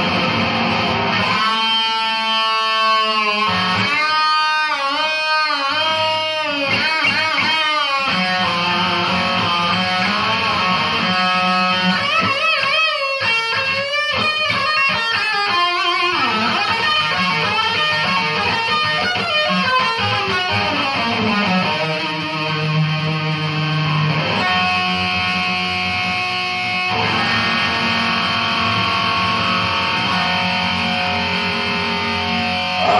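Electric guitar solo with distortion, played on a single-cutaway electric guitar: sustained, bent notes with wide vibrato, and longer held notes later, including a low note for about two seconds near the end.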